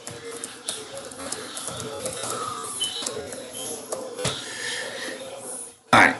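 Computer keyboard typing: a run of light, irregular key clicks, with a faint voice underneath.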